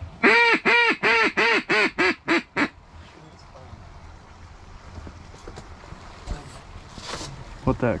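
Mallard quacking in the hen's descending pattern: a run of about nine loud quacks, each shorter and quieter than the one before, over the first few seconds.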